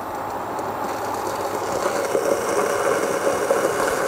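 Enamel pot of soup heating on an Esperanza EKH006 induction hot plate drawing about 1100 W, giving off a rattling crackle that grows steadily louder as the pan heats.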